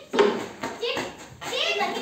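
Several children talking and calling out over one another while playing, loudest just after the start.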